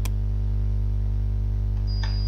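Steady low electrical hum with evenly spaced overtones, typical of mains hum picked up by the recording setup, with a single sharp click at the very start.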